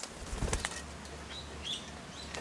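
Australian king parrots' wings flapping as they fly in to land on a feeding tray, a burst of wingbeats about half a second in, followed by a few faint short chirps.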